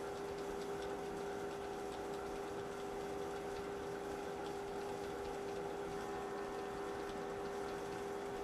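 Steady machine hum with a constant low tone, overlaid by faint, scattered clicks of a computer keyboard as entries are deleted one by one.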